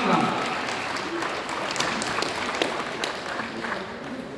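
Scattered hand-clapping from a small audience, many separate claps that thin out and grow quieter over a few seconds.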